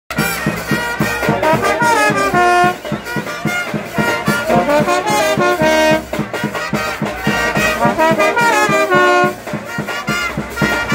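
Colombian brass band playing a porro live: trumpets, trombones and euphonium-type horns carry the melody over a quick, steady percussion beat.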